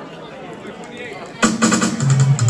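Crowd chatter, then about one and a half seconds in a reggae record starts suddenly over the sound system, loud, with drum hits and deep bass.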